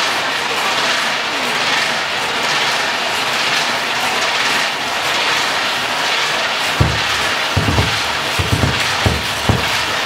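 Processional drum carried in a street procession, beating deep, slow strokes that start about seven seconds in, in an uneven pattern of single and double beats, over a steady murmur and shuffle of the crowd.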